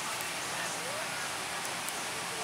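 Faint, indistinct background voices over a steady hiss of busy-hall noise.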